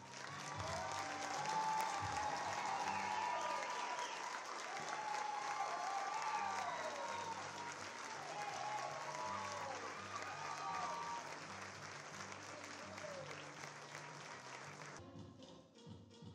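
Audience applause, steady and dense, with background music underneath; the applause cuts off suddenly near the end.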